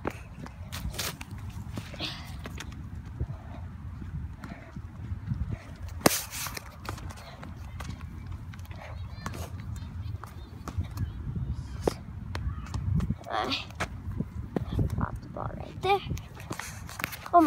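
Footsteps and handling noise from a hand-held phone carried by someone moving across a dirt and grass field: a low steady rumble with scattered knocks and taps, and one sharp knock about six seconds in.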